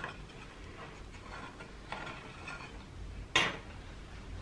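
Quiet taps and clinks of a metal knife and round metal cake tins being handled while the baked cakes are tested, with one louder clack about three seconds in as the knife is set down on the worktop.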